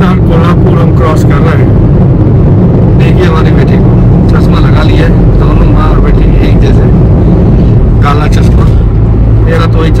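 Loud steady low rumble of road and engine noise inside a moving car's cabin, with people talking over it.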